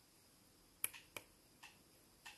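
Small tactile push button on a breadboard clicking twice about a second in, the two clicks a third of a second apart, with a fainter tick shortly after; otherwise near silence.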